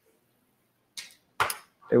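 Near silence for about a second, then two short hissing noises, the second louder, before a man starts speaking right at the end.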